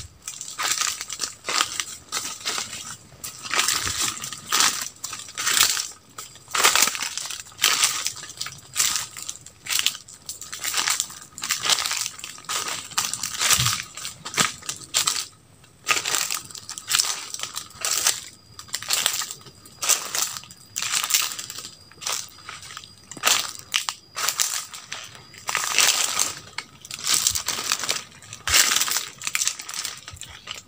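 Footsteps crunching through a thick layer of dry fallen leaves, one crunch with each step at a walking pace.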